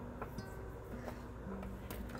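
Quiet background music of held low notes that step in pitch, with the feel of a plucked-string instrument, and a few faint light clicks from the wire being handled.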